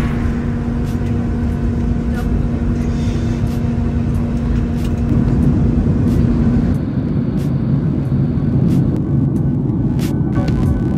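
Jet airliner engine noise heard from inside the passenger cabin: a steady low rumble with a humming tone that changes about seven seconds in.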